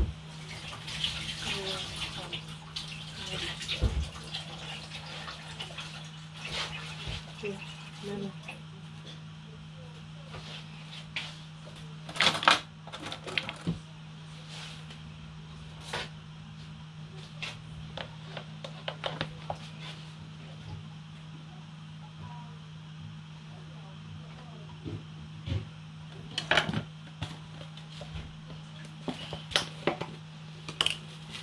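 A kitchen tap runs for a few seconds near the start, followed by scattered knocks and clatter of dishes and containers being handled. A steady low hum runs underneath throughout.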